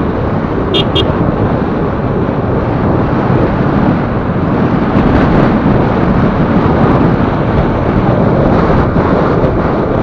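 Steady wind buffeting the microphone and road noise from a moving motorcycle, loud and unbroken.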